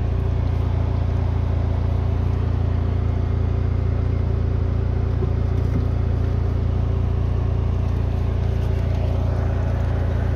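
A steady low rumble with a faint hum above it, unchanging in pitch and level, typical of an engine running at idle.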